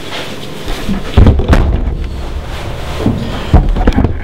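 Loud low thumps and rumbling with rustling: handling noise on a handheld camera's microphone as it is knocked and swung about. The two heaviest thumps come about a second in and near the end.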